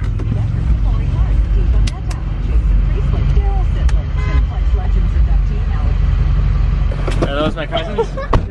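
Pickup truck driving, heard from inside the cab: a loud, steady low rumble of engine and road noise. Muffled voices come in near the end.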